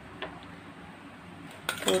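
Light clinks of a utensil against a glass mixing bowl as diced cucumber is tipped in: a couple of faint taps early on, then a short cluster of sharper clinks near the end.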